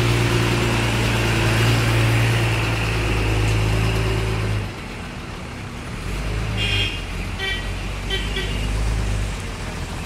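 A diesel lorry's engine running as it passes close by, its hum cutting off about halfway through; then cars pass with a second, weaker engine hum and a few short horn toots.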